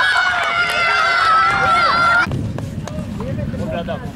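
Several high-pitched young voices shouting together in one long sustained cheer as a goal goes in, cut off abruptly about two seconds in. After the cut come quieter outdoor pitch noise and a few scattered shouts.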